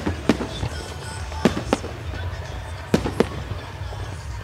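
Aerial firework shells from a Pirosud display bursting with sharp bangs. The bangs come in three pairs about a quarter to a third of a second apart, with roughly a second and a half between pairs.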